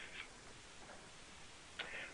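Faint steady hiss of the recording's background noise, with a short soft noise near the end.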